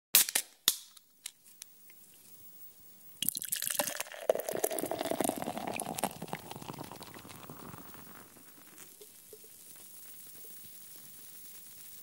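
Liquid sound effect for an animated logo: a few sharp drips in the first two seconds, then a splash and pour starting about three seconds in that fades away over the next several seconds.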